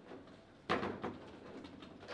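Table football rally: a sharp knock about two-thirds of a second in and a lighter one shortly after, as the ball is struck by the rod-mounted player figures, with faint rod rattle between.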